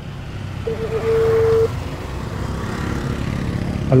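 Motorcycle engine running at low road speed with a steady low hum. About a second in, a phone call's ringing tone sounds, a short blip and then a steady tone held for nearly a second.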